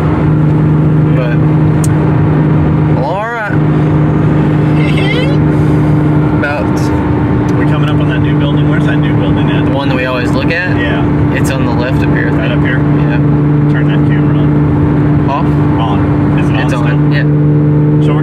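Porsche Cayman S engine and road noise heard from inside the cabin while cruising at highway speed: a steady low drone. There is a brief dip about three seconds in.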